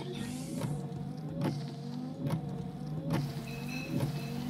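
Opening of a film trailer's soundtrack: a steady low hum with a short sliding squeak and click repeating about every 0.8 seconds.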